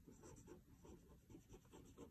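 Faint scratching of a pen writing a word on paper in short, irregular strokes.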